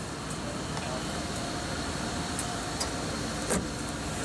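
Steady hum of an idling car engine, with a few faint clicks in the second half.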